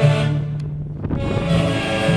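Live Peruvian folk band of saxophones, violins, clarinet and harp playing. A low note is held through the first second while the higher parts briefly drop away, then the full band comes back in.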